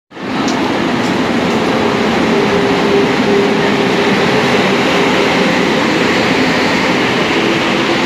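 Express train running past close along a station platform, locomotive first and then passenger coaches, with a steady loud rumble of wheels on rails. A held pitched tone sits over the rumble in the middle of the stretch.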